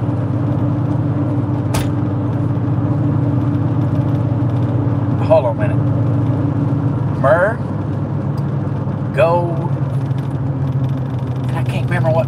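Steady engine and road drone inside a moving car's cabin. A single sharp click comes about two seconds in, and a few short vocal murmurs come later.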